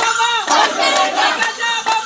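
A group of men shouting and chanting together in short loud calls, with a few sharp hits among them.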